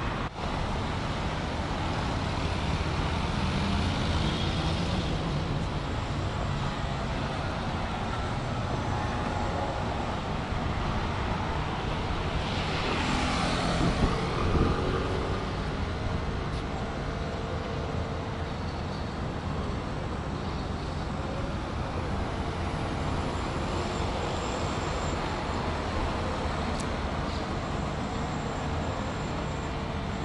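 Steady city road traffic, cars and other vehicles running past, with one vehicle passing close and loud about halfway through.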